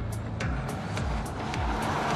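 BMW 5 Series GT Power eDrive hybrid prototype passing close by, its road and drive noise swelling to a peak near the end, over background music with a steady beat.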